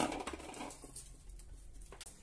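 Faint handling noise as a stainless saucepan of Brussels sprouts is lifted off a glass-ceramic hob, over quiet kitchen room tone with a low steady hum.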